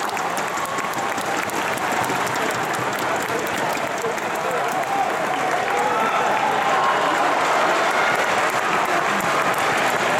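Large arena crowd applauding and cheering, with individual spectators shouting, after a point has been won in a table tennis match.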